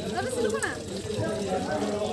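People's voices: a short bit of talk in the first second, then quieter voices in the background.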